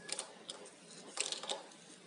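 Faint, scattered ticks and scrapes of a hand-turned thread tap cutting a new thread in a stripped M6 hole, shaving out metal to take a thread-repair coil insert.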